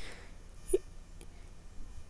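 A single short, faint throat sound about three-quarters of a second in, over low background hiss.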